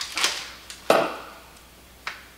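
A few short handling noises: a plastic tumbler set down on a kitchen counter and a small treat pouch being handled and opened. There is a click at the start, then two short crinkling bursts, the second one louder, about a second in.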